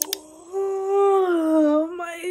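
A woman's long voiced yawn: one held tone that swells about half a second in and slides slowly down in pitch toward the end.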